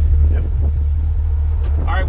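Steady low drone of a 1976 Ford Bronco's 351 Windsor V8 as it drives along at an even speed, heard from inside the cab. A man's voice starts just before the end.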